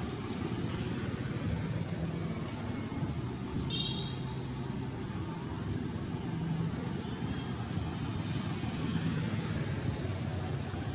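Steady low rumble of background vehicle traffic, with a brief high-pitched chirp about four seconds in and a fainter one about eight seconds in.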